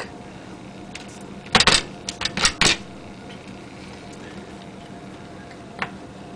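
A quick run of five or six sharp clicks and knocks about a second and a half in, with one more near the end: the plastic housing of a refrigerator ice maker module and the pliers jammed in it knocking as they are handled. A steady low electrical hum runs underneath.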